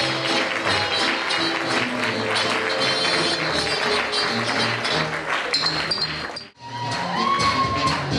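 Upbeat dance music playing for a stage performance. It cuts out abruptly about six and a half seconds in, and a different song starts up.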